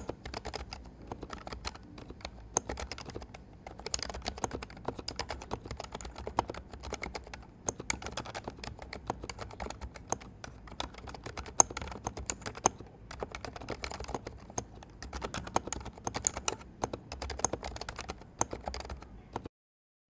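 Typing on an HHKB Hybrid keyboard with Topre electrostatic-capacitive switches: a steady, continuous run of keystrokes that stops about half a second before the end.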